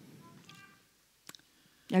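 A pause in a woman's speech: a faint, brief voice-like sound, then a single sharp click about a second and a quarter in, before her speech resumes near the end.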